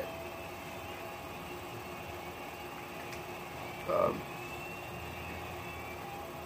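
Steady hum of a window air conditioner running, with a man's brief "um" about four seconds in.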